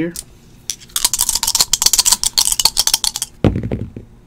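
Two dice rattled rapidly in a cupped hand for about two seconds, then thrown down: a louder knock as they land, with a few quick clicks as they tumble to a stop on a desk mat.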